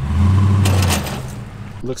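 Pickup truck's engine running with a steady low drone and a rushing noise over it, which drops away about a second in.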